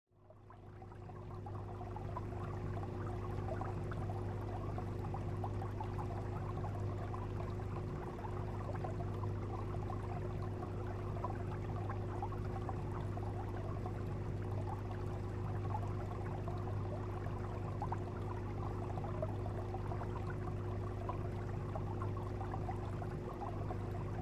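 Steady underwater-style water ambience with a low hum, fading in over the first couple of seconds and then holding even throughout.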